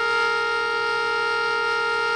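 Giraffe-shaped whistling tea kettle whistling at the boil: a steady chord of several tones that sounds like a car horn.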